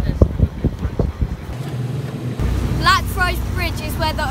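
Italian wooden speedboat's engine running under way, with wind buffeting the microphone in irregular low thumps. After a cut, the engine hum is steady, and a boy's voice comes in near the end.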